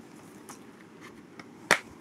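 A plastic Blu-ray case snapping open: one sharp click near the end, after faint handling rustle.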